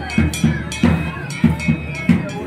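Rhythmic percussion: a drum beaten in a steady beat, about two to three strikes a second, each with a metallic clank, and voices around it.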